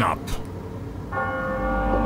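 The last word of a man's deep narration, then about a second in a single deep bell tone from the music soundtrack strikes and holds steady.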